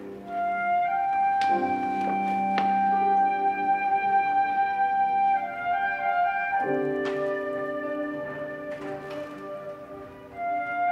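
Chamber ensemble of flute, erhu, guzheng, piano and cello playing slow Chinese-style music: a long held flute-like melody note lasting about four seconds over sustained chords, with a few sharp plucked or struck notes. The harmony shifts to a fuller chord about two-thirds of the way through.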